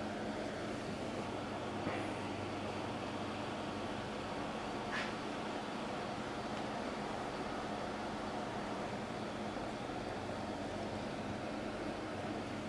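Steady background hiss with a low electrical hum, broken by a couple of faint clicks about two and five seconds in.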